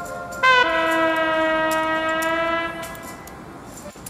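Electronic ambient music: a sustained horn-like synthesizer chord enters about half a second in with a slight drop in pitch, holds steady and stops near three seconds, over faint scattered clicks.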